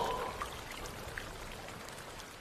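Steady rain falling, an even hiss with a few scattered drop ticks. A short tone fades out at the very start.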